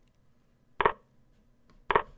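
A chess program's move sound: two short wooden-sounding clicks about a second apart, each marking a move played on the board.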